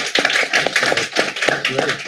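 Applause: a small group of people clapping, the separate claps distinct and irregular.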